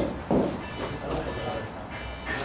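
Faint, indistinct voices and the murmur of an indoor sports hall, with one short voiced sound shortly after the start.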